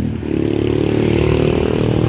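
Small motor scooters passing close by, their engines running, with the pitch drifting slightly upward.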